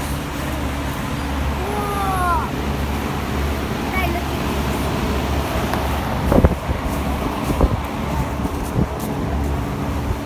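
Steady low hum and rushing air of a large drum fan running. A brief high voice comes about two seconds in, and a few sharp knocks sound between six and nine seconds in.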